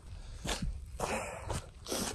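Footsteps of a person walking, not running, about two steps a second.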